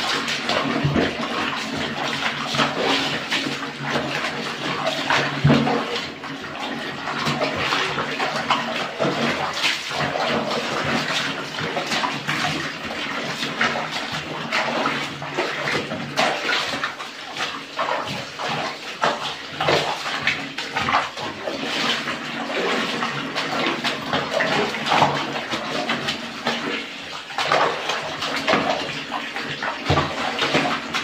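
Soapy water sloshing and splashing in a plastic basin as a load of laundry is trodden underfoot and worked by hand, with continual irregular splashes and squelches of wet cloth.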